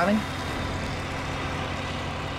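A steady low background rumble with a faint hum, unchanging, after the end of a man's spoken word.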